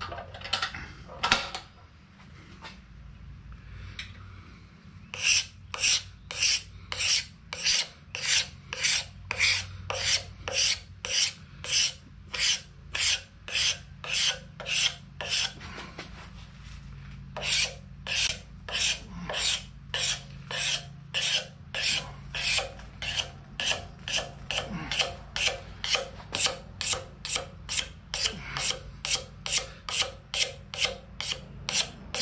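Hand rasping of a wooden axe handle: regular scraping strokes, about two a second. After a few strokes at the start and a short lull, they run steadily, with one brief pause about halfway through.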